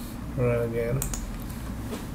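A brief hummed vocal sound about half a second in, followed by a single sharp computer-keyboard click about a second in, over a low steady background hum.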